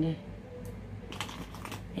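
A few light, irregular clicks and taps of small items being handled, as in rummaging through makeup brushes and products.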